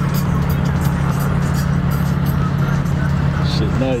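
Steady low drone of cars cruising at a constant speed, heard from inside a moving car, with music playing along with it.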